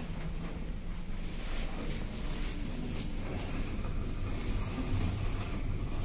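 Steady low hum and rumble inside a 1998 KMZ elevator car with its doors closed, as the car travels between floors.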